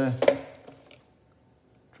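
A single sharp tap of metal drawing dividers being set down on the drawing board, just after the last of a spoken word.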